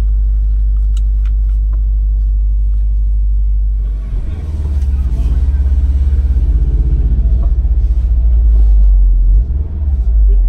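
Subaru WRX STI's turbocharged flat-four idling steadily, heard from inside the cabin. About four seconds in it grows louder and busier as the car is put in gear and pulls away slowly.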